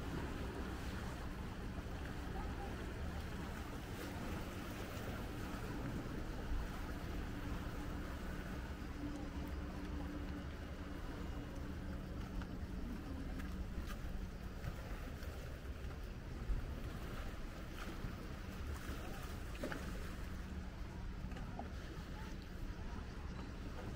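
Steady outdoor lakeside ambience: a low rumble with a faint engine-like hum through the first two-thirds, and a few light knocks.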